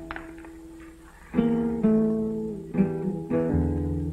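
Acoustic guitar opening a song: a few soft notes first, then chords struck firmly about a second and a half in and left to ring, with several more strikes after.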